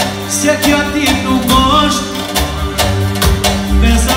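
Live amplified music: a man singing into a microphone over a plucked string instrument and a steady beat.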